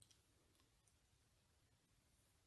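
Near silence with a few faint clicks in the first second, from a pen writing on a paper planner page.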